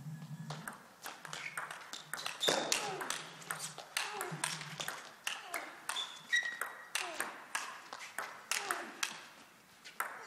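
A long table tennis rally: the plastic ball clicks sharply off the players' bats and the table in a fast, irregular stream of hits.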